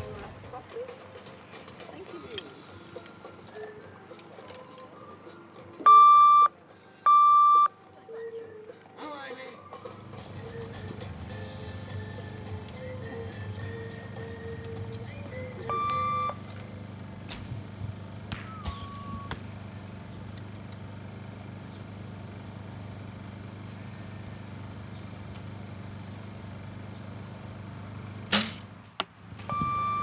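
Electronic tournament timing signal beeping through a PA speaker: two loud beeps about a second apart, the signal calling archers to the shooting line, then about ten seconds later a single quieter beep, the signal to start shooting. Near the end there is one sharp crack.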